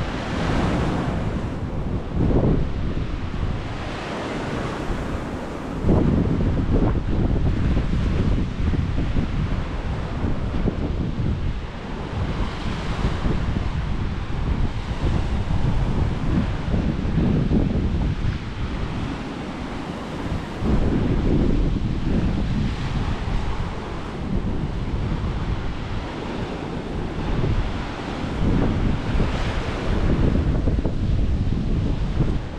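Wind buffeting the microphone in gusts, over the steady wash of ocean surf breaking on the shore.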